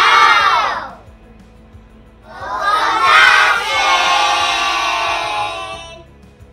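A class of young children shouting a slogan together in unison, twice: one shout falls away about a second in, and after a short pause a second, longer group shout starts and holds for over three seconds.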